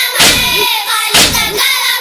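Boys' voices chanting a noha lament, with a hand striking the chest (matam) about once a second in time with the chant, two beats in this stretch.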